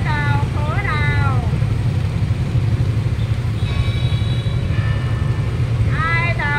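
Steady low rumble of scooter traffic. Over it, a voice with strongly gliding pitch sounds in the first second and a half and again at the end, with a steadier held tone in between.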